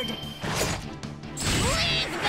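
Cartoon battle sound effects: crashing impacts, two of them about a second apart, over dramatic background music.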